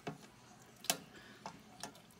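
A few sharp clicks and taps, four in all with the loudest about a second in, as a red-eared slider goes at an earthworm on the floor of a hard plastic tub.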